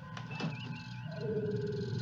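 Tribbles trilling, a creature sound effect: a high warbling trill about half a second in, then a lower held coo through the second half, over a faint steady electronic hum.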